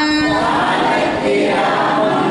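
Unaccompanied devotional singing of verses through a microphone, with a note held steady around the start.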